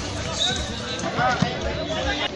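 Voices of players and spectators calling and talking at an outdoor football match, several overlapping, with a single sharp thump about a second and a half in.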